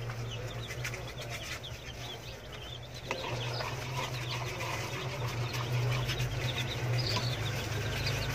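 A brood of young chicks peeping continuously in short, falling chirps, over a steady low hum that gets louder about three seconds in.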